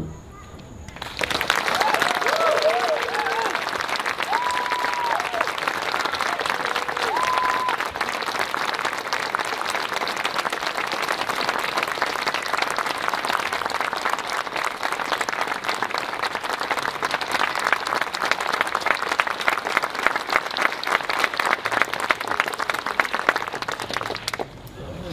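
Audience applauding after a brass band piece ends. The clapping starts about a second in and keeps going steadily until it stops near the end, with a few voices calling out in the first several seconds.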